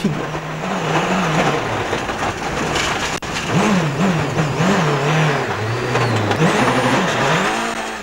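Citroën Xsara WRC rally car's turbocharged four-cylinder engine heard from inside the car, revs rising and falling again and again over a dense rush of gravel and dust noise, as the car goes off the line into the roadside grass.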